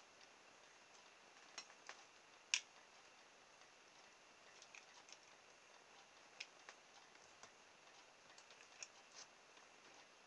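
Faint, irregular small clicks and snaps of a snap-off craft knife blade cutting through thin plastic tubing on a cutting mat. The loudest click comes about two and a half seconds in.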